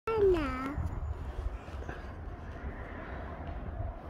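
A short, high vocal call that slides down in pitch right at the start, then a low uneven rumble like wind buffeting the microphone.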